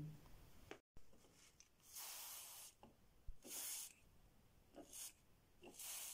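A few faint, short hisses spread over several seconds: an aerosol can of contact cleaner (Kontaktol) sprayed onto the starter motor's brush plate to free carbon brushes stuck in their holders.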